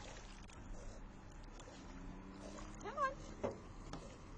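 Faint lapping water as a dog swims with its head above the surface. A low steady hum comes in about halfway through, and a brief voice sound is heard about three seconds in.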